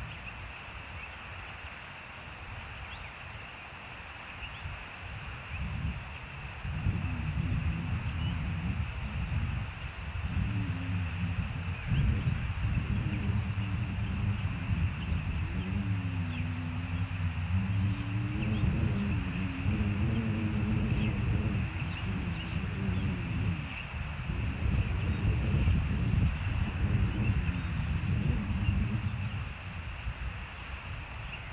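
A low engine drone swells in about six seconds in, holds with its pitch slowly wavering up and down, and falls away just before the end.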